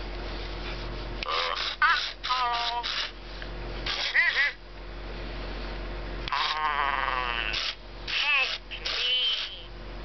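An original 1998 Tiger Electronics Furby talking in high, warbling electronic chirps and babble from its small speaker as it is petted. The sound comes in four short bursts.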